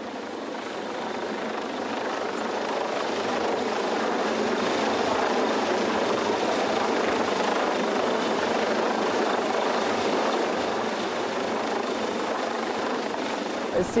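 Coastguard search-and-rescue helicopter hovering overhead during a winch lowering, its rotor and engine noise a steady rushing sound that grows louder over the first few seconds and then holds. It is loud enough to drown out conversation.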